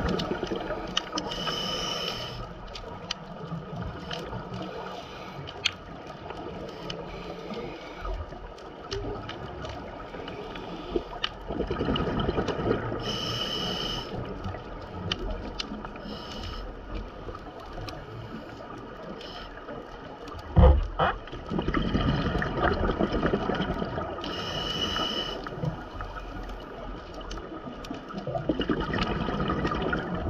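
A scuba diver breathing through a regulator, heard muffled inside an underwater camera housing: a hissing inhale three or four times, about every eleven seconds, with gurgling rushes of exhaled bubbles between. A sharp knock about two-thirds of the way through is the loudest sound.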